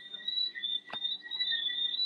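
Steady, slightly wavering high-pitched trilling of night insects, with one faint click about a second in.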